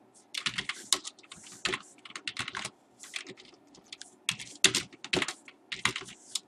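Typing on a computer keyboard: irregular keystrokes, with a short lull about halfway through before the typing picks up again.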